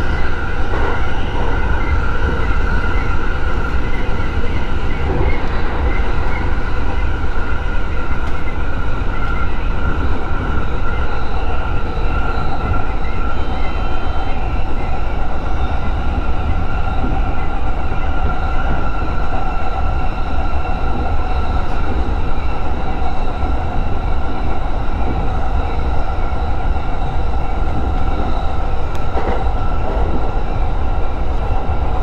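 E231-series electric commuter train running at speed, heard from inside the driver's cab: a steady rumble of wheels on rail with a steady whine held over it throughout.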